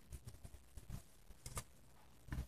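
Faint, scattered rustles and light ticks of a satin ribbon and needle being worked by hand through vagonite embroidery fabric, with a slightly sharper tick about one and a half seconds in.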